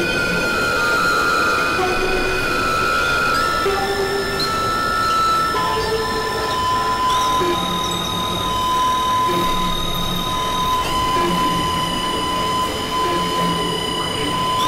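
Experimental electronic drone music: sustained synthesizer tones over a dense, noisy rumbling bed, the high tones stepping to new pitches every two to four seconds.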